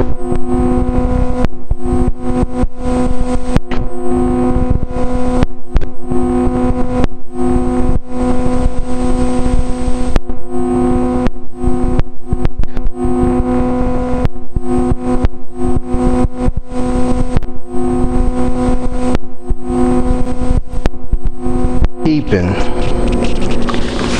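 Loud, steady electronic buzz of several fixed tones from an audio recording fault, broken over and over by short crackling dropouts. About two seconds before the end the buzz breaks off and a voice is heard.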